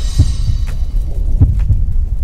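Deep bass thuds in a slow heartbeat rhythm, over a low rumble, as the sound design of an animated logo sting.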